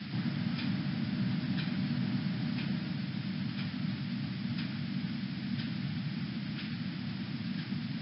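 Faint ticking about once a second over a steady low background hum and hiss.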